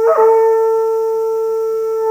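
Horagai (Japanese conch-shell trumpet), a newly made shell about 41 cm long, blown in one long, steady note rich in overtones, with a brief flick in the tone just after the start.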